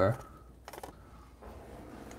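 A few faint, quick clicks a little over half a second in, then low room tone.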